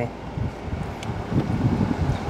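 Steady rushing of a car's air conditioning blowing inside the cabin, over the Mitsubishi Delica D:5's 2.2-litre diesel engine idling.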